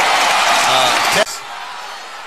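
Basketball arena crowd cheering loudly under a TV commentator's voice, cut off abruptly a little over a second in.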